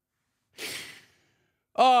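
A man's single sigh, a short breathy exhale about half a second in as he winds down from laughing; he starts speaking just before the end.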